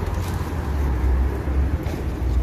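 City street traffic: passing cars over a steady low rumble.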